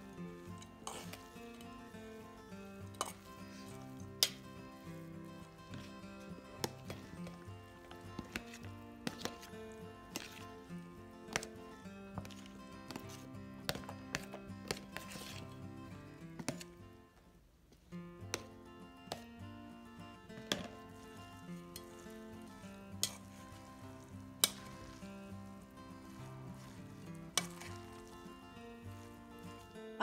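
A metal spoon clinking and scraping against a stainless steel bowl and a plastic container while grated vegetables and cooked soy are stirred together: sharp, irregular clinks over soft background music, which drops out briefly just past halfway.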